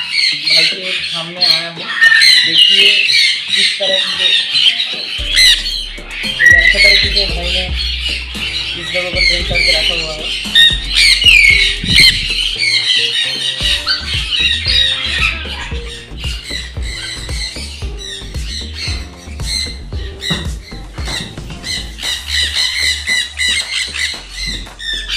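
Many sun conures squawking loudly, their harsh high calls overlapping without a break.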